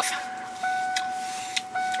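A steady, high electric whine inside a vehicle, like a small electric motor running, over a faint hiss. It drops out for a moment and picks up again about every second.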